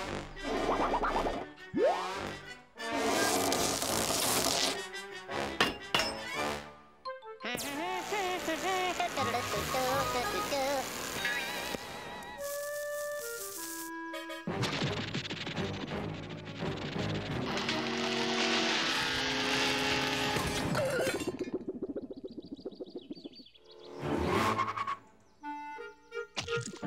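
Cartoon orchestral score with slapstick sound effects: thunks, whacks and clinks over the music, and a stepwise falling run of notes a little past the middle.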